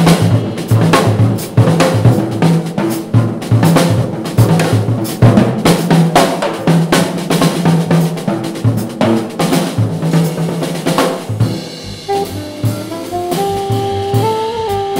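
Jazz drum kit (a Gretsch set) played as a busy solo break of snare hits, rimshots, rolls and bass-drum kicks, with a double bass walking underneath. About twelve seconds in, the drums thin out and an alto saxophone comes back in with held notes.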